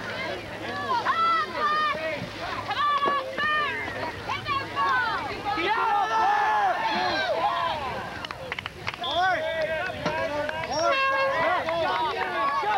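Several voices shouting and calling to one another across a soccer field, with many overlapping yells and no clear words. A few sharp knocks come about nine seconds in.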